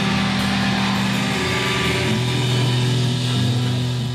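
Live heavy rock band holding a sustained chord, with distorted guitar and bass ringing on steadily.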